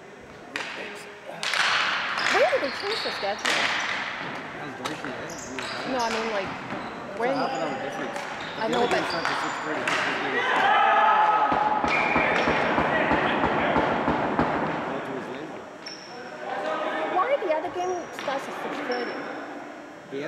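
Ball hockey play on a gymnasium's hardwood floor: sticks and ball clacking and knocking in sharp, irregular hits, with players shouting to one another. The hall's echo rings after each hit.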